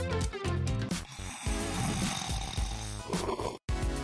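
Background music, then a man snoring for about two seconds, cut off abruptly near the end.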